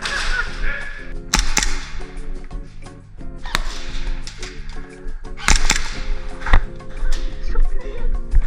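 Background music with a steady low chord pattern throughout. Over it come several sharp cracks from airsoft gun shots at irregular spacing, two of them in quick pairs.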